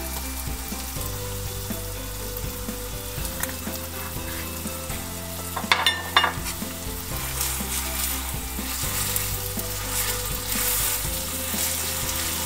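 Chicken burgers frying in hot oil in a nonstick pan, a steady crackling sizzle, with a brief knock about six seconds in.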